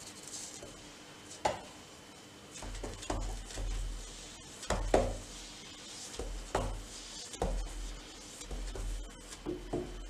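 A paintbrush knocking and clinking against a paint tin as it is loaded, about half a dozen light knocks with the loudest about five seconds in, and low thumps of movement between them.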